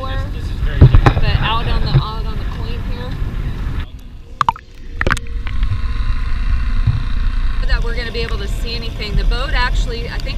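Wind and water noise on the microphone aboard a small inflatable dinghy, with voices. About four seconds in, the sound drops and turns muffled with a couple of knocks as the camera goes under the surface. Voices return near the end.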